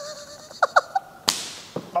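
A single sharp slap about a second and a half in, with a short fading tail, preceded by a few brief laughing vocal sounds.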